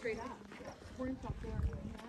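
Faint background chatter of several people talking at a distance, with low rumbles on the microphone.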